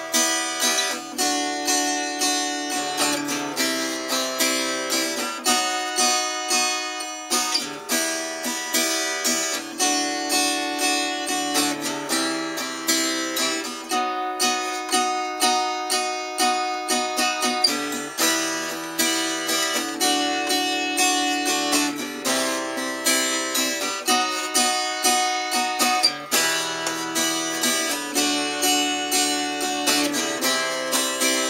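Acoustic guitar strummed steadily in an even down-up pattern through the song's intro chords, D minor, D major, C major and B major, changing chord every second or two.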